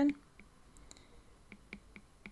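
A stylus tip tapping on a tablet's glass screen while handwriting: a few light, short ticks at uneven intervals.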